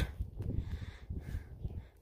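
A faint, harsh bird call in the middle of the pause, over a low rumble.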